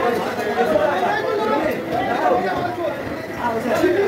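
Indistinct chatter of people talking, voices overlapping.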